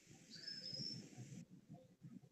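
Near silence, with one faint, short, high-pitched chirp about half a second in.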